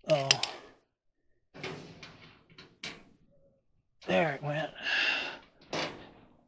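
A man's short untranscribed vocalisations, a brief utterance at the start and another about four seconds in. In between are a few light clicks and rustles of handling.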